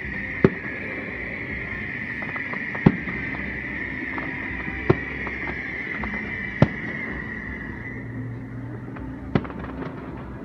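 Distant aerial fireworks shells bursting: five sharp bangs at uneven intervals of about two seconds, with a few fainter pops between, over a steady high-pitched whine in the background.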